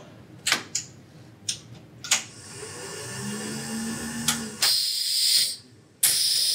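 Clicks of relays and switches on an electric relay control trainer, then its small motor running with a low hum for about two seconds and a loud burst of compressed air hissing out near the end as the pneumatic cylinders work.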